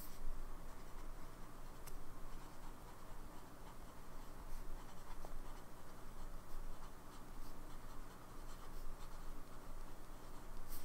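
Steel nib of a broad-nib Lamy Safari fountain pen writing on paper: a continuous light scratching as letters are formed, with small faint clicks now and then.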